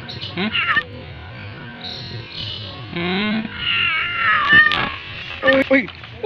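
A stray domestic cat meowing: a long meow falling in pitch about three and a half seconds in, with short bursts of a man's voice around it.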